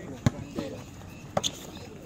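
Basketball bouncing on an outdoor concrete court: two sharp dribbles about a second apart.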